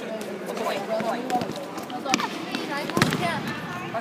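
Football being kicked and bouncing on a sports hall floor: several sharp knocks, the loudest about two and three seconds in, over children's voices in the hall.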